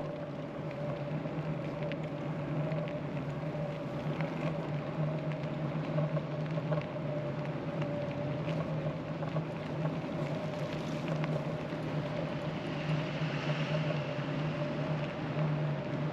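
E-bike riding along a paved path: a steady hum with the rolling noise of the tyres, unchanging in pitch, with a faint extra hiss near the end.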